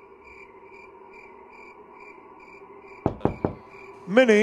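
Cartoon night ambience of evenly repeating cricket-like chirps over a faint steady drone, then three quick knocks on a wooden door near the end.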